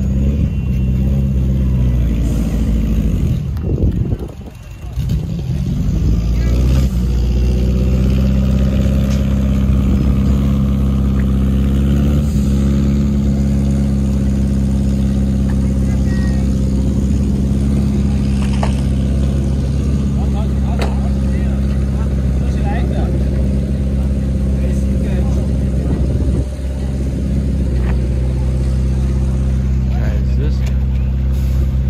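A combustion car engine idling loudly and steadily with a deep, even note. About four seconds in its pitch sags and the sound briefly drops away before climbing back, and there is another short dip near the end.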